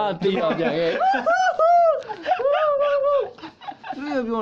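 Young men's voices laughing and calling out, with several high-pitched, drawn-out vocal sounds in the middle.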